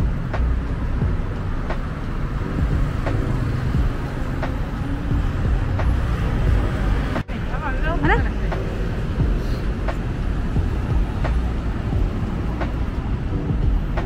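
Steady rumble of city street traffic with cars passing, broken by a brief drop-out about halfway through.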